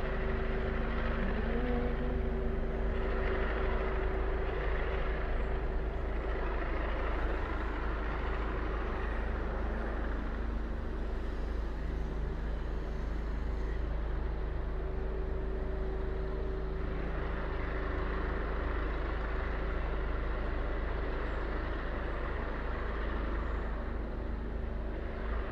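Steady street traffic noise with a vehicle engine running nearby, a constant low hum under a deep rumble.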